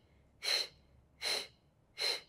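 A woman's short, sharp breaths forced out through the mouth, two hissy puffs under a second apart: the pulsed, percussive breathing of the Pilates Hundred, here on the exhale.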